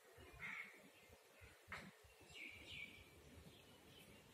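Near silence, with a few faint bird calls in the background, one about half a second in and two close together near the middle.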